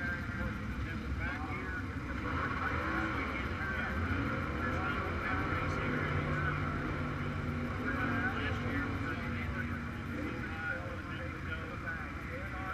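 Indistinct background voices over a low rumble, with a steady low hum that comes in about five seconds in and fades out a few seconds later.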